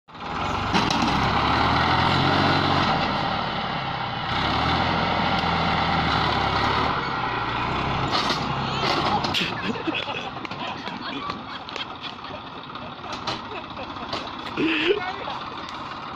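Small tractor engine running steadily under load while it drags a rear-mounted scraper through sand; it is loud for the first nine seconds, with a brief dip around four seconds, then drops away and quietens.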